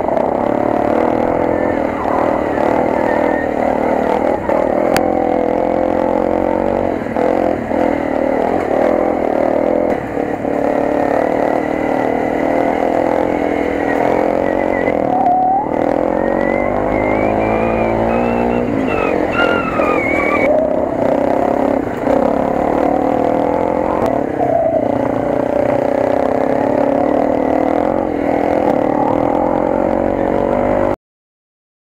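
Off-road trail motorcycle engine running under load on a dirt track, its pitch rising and falling with the throttle, with a few climbing revs about halfway through.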